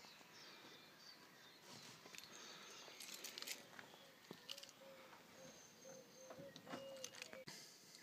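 Faint outdoor ambience with distant birds calling in short, scattered notes.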